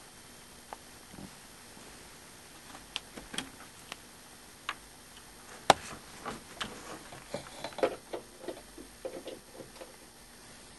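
Irregular small clicks and taps from the wiring being handled, with one sharp click about halfway through as a red lead's crimped connector is pulled off an electrolysis cell plate; the clicks come thicker in the second half.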